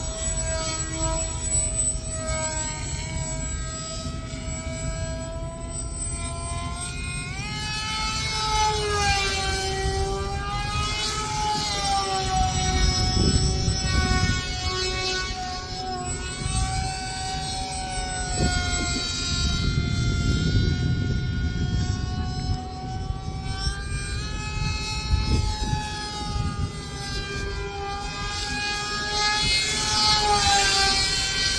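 Electric motor and propeller of a Flite Test FT22 foam RC model jet whining in flight, its pitch rising and falling again and again as it flies. A low rumbling noise runs underneath and swells a couple of times.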